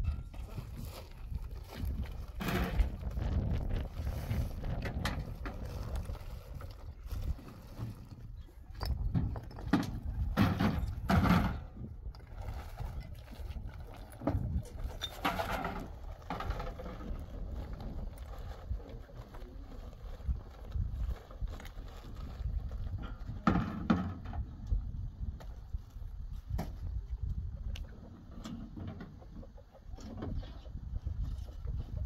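Work sounds from hand masonry with stone blocks and cement: scattered knocks and scrapes over a steady low rumble, with a few louder bursts.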